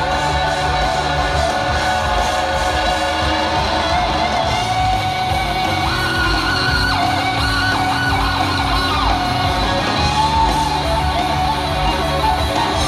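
Rock band playing live, an instrumental passage with electric guitar holding and bending notes over bass and drums. It is heard from within a stadium crowd.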